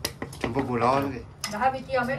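A few sharp metallic clinks of a knife blade tapping and scraping against a small stainless-steel mesh strainer held over a wooden mortar. A person's voice is heard between the clinks.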